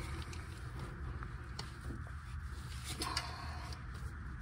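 A few faint clicks and knocks of a cup-type oil filter wrench being worked on a car's oil filter, over a low steady background hum.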